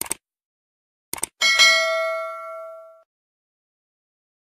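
Sound effect from a subscribe-button animation: two quick mouse clicks, then two more about a second later, then a bright bell ding that rings out and fades over about a second and a half.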